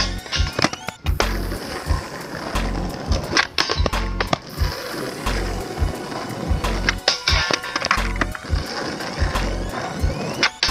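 Skateboard on a low metal flat rail and rough asphalt: the deck sliding along the rail in a boardslide, wheels rolling, and several sharp clacks of the board. Background music with a steady beat runs underneath.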